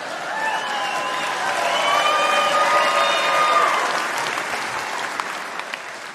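Live audience applauding after a punchline, with a few cheers riding over the clapping; it swells in the middle and then dies down.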